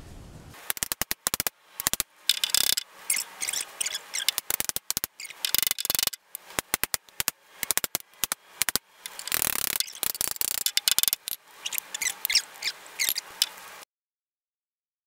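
Pointed end of a homemade dent-pushing tool scraping and clicking against the inside of a dented metal gas filler neck as it is worked to force the dent out: a rapid, irregular run of short scrapes and clicks that cuts off abruptly near the end.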